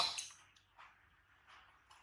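A sharp plastic click right at the start, a smaller click just after, then faint soft handling sounds as a baby macaque grabs a plastic feeding bottle.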